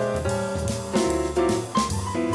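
Jazz accompaniment: piano chords over bass and drum kit, changing chords every half second or so with steady cymbal and drum strokes.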